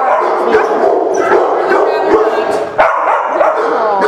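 Several dogs barking and yipping at once in a continuous, overlapping din.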